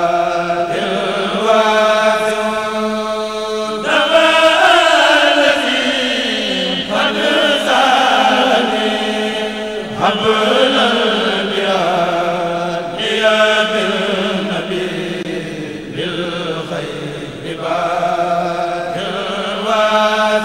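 A group of men chanting a Mouride khassida in Arabic in unison, without instruments, in long held phrases whose pitch slides between notes.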